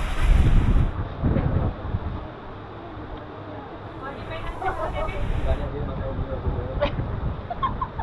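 Indistinct people's voices talking, with a low rumble on the microphone in the first couple of seconds.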